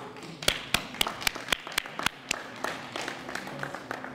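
Small group applauding, one pair of hands standing out with sharp, even claps about four a second; it dies away near the end.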